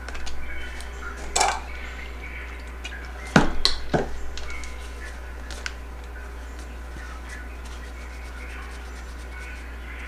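Paper towel rustling as it is handled, then two sharp clicks about half a second apart a little over three seconds in. A low steady hum runs underneath.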